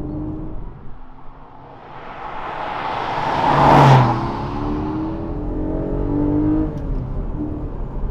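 Porsche 718 Cayman GTS 4.0 driving past at speed, its naturally aspirated 4.0-litre flat-six growing louder to a peak as it passes about four seconds in, then revving higher as it pulls away. The exhaust note is muffled by the particulate-filter exhaust but still sounds very good.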